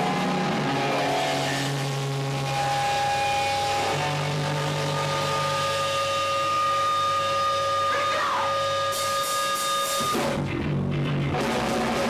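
Live hardcore punk band: electric guitars hold long ringing notes for several seconds at a time. A little after ten seconds in the sound changes abruptly as the full band comes in.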